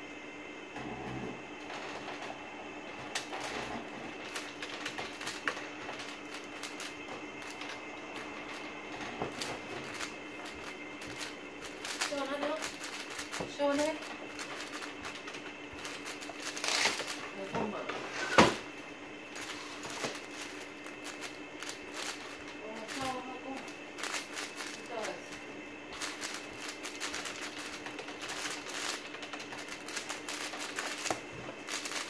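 WuQue M 4x4 speed cube being turned fast during a timed solve: a continuous stream of quick plastic clicks and clacks from the layer turns. One sharp knock about eighteen seconds in is the loudest sound.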